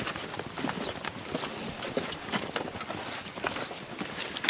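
Horses' hooves clopping on hard ground, an irregular run of knocks.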